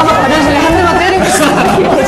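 Several people talking loudly over one another in Korean, with laughter mixed in.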